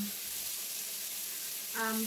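Pork belly slices sizzling on an electric grill plate, a steady high hiss of fat frying.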